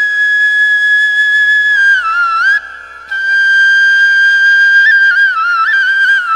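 Flute playing a slow melodic line of two long held notes, each ending in quick ornamental turns, with a brief break between them about halfway through.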